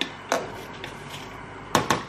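A few sharp knocks and clatters of kitchen utensils and dishes on a worktop: a single knock near the start and a quick pair near the end, over a steady faint hiss.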